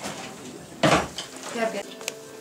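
A comedy crash sound effect for a heavy weight landing: one sudden loud crash about a second in, dying away within half a second.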